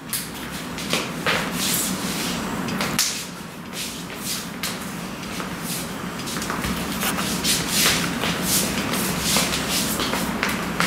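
Quick, irregular swishes and slaps of sleeves and forearms as two people trade Wing Chun hand strikes and blocks, several a second, over a steady low hum.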